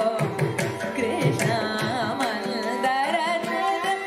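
Carnatic classical music: a woman's voice sings an ornamented kriti in raga Reetigowla, shadowed by violin and driven by mridangam and ghatam strokes.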